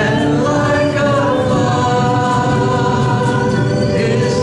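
Live worship music: singers hold long notes over strummed acoustic and electric guitar.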